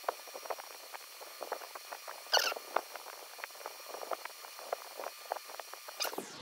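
Close, faint wet clicks and smacks of lips and a lipstick applicator wand while lipstick is put on, with one louder squeaky smack about two and a half seconds in.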